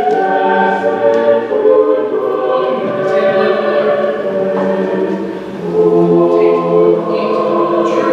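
A group of voices singing a hymn in slow, held notes, with a short breath-like dip about five and a half seconds in.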